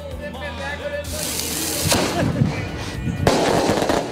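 Recorded fireworks played back: a high hiss lasting about a second, then a dense crackling burst of firework shots near the end, over background music.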